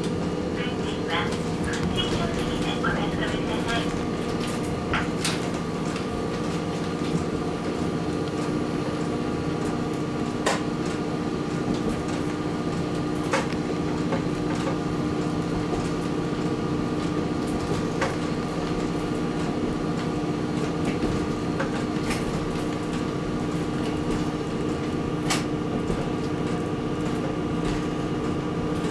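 Diesel engine of a KiHa 40 series railcar running steadily as the train travels along the line, heard from the driver's cab, with a few scattered sharp clicks.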